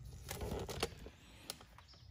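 Faint handling noise: soft rustling in the first second and a few sharp clicks as a phone camera is moved and turned around.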